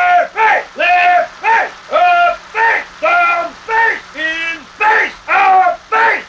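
A drill sergeant barking facing commands ('Ri' face! Lef' face! Up face! Down face!'), one short shout after another, about two a second, in an even rhythm, each call rising and falling in pitch.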